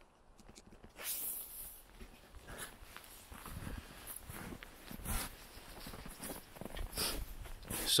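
A quiet pause outdoors: faint background hush with a few short, soft hissy sounds and some faint rustling, with no words spoken.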